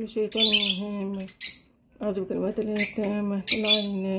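A voice reciting the Arabic evening remembrances in a slow, melodic chant, with held notes broken by sharp hissing consonants.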